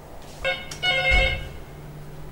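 Electronic telephone ringing: two rings, a short one followed by a longer one, with a dull low thump during the second ring.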